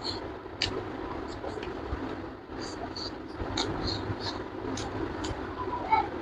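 Open-mouthed chewing of rice and fish, with wet lip-smacking clicks about twice a second, over a steady low background rumble.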